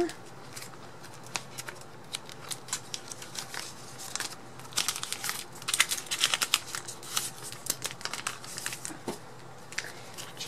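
Photocards being slid into a binder's plastic pocket sleeves: the plastic pages crinkle and rustle with short clicks, busiest about halfway through.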